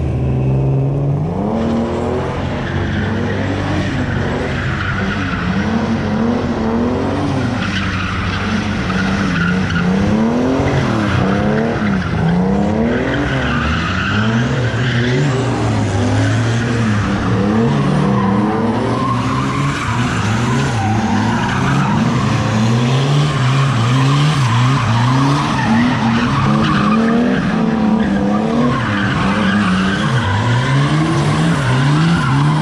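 Turbocharged BMW 328 street car drifting: its engine revs up and down over and over, with the tyres squealing through the slides.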